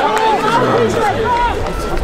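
Many voices shouting and calling over one another at an open-air football match. After about a second and a half the shouting thins and a low rumble comes in.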